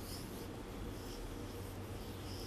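Marker pen writing on a whiteboard: a few faint, short strokes of the felt tip across the board.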